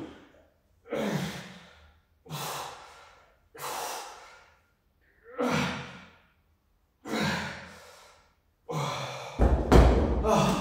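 A man exhaling hard with each rep of a dumbbell floor press, about one breath every one and a half seconds, six in all, as the set is pushed to failure. Near the end, a heavy thud as the pair of 15 kg dumbbells is set down on the rubber floor.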